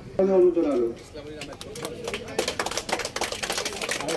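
A man's voice holding a long, drawn-out call over a microphone, then scattered hand claps from a small crowd starting about a second in and thickening into applause over the second half.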